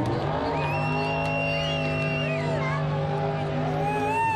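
Top Alcohol Funny Car drag racing engine held at steady high revs, one even pitch for about three and a half seconds, stopping just before the end.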